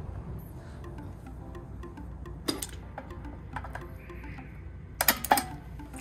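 Quiet background music, with a few sharp clicks of metal fittings and a short clatter of clicks near the end as a CO2 gas line is connected to a stainless homebrew keg.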